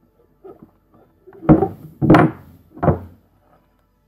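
Four knocks and thumps from a handheld USB digital microscope and its cord being handled and set against a desk, the loudest and sharpest about two seconds in.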